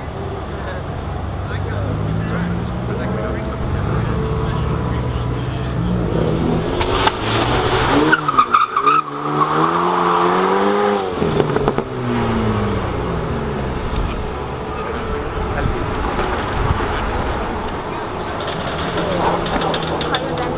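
Alpine A110 sports car's turbocharged four-cylinder engine revving as it drifts in circles. Its pitch swings up and down rapidly for a few seconds around the middle.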